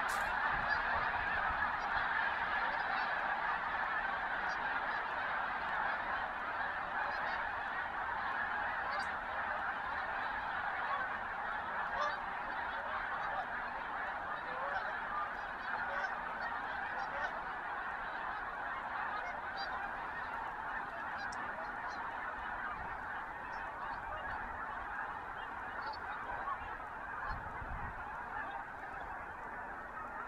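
A large flock of snow geese calling in flight: a dense, continuous mass of many overlapping honking calls that slowly fades as the flock moves away.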